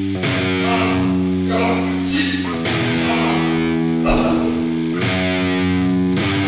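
A rock song's instrumental stretch: distorted electric guitar playing long held chords that change every two seconds or so, with no singing.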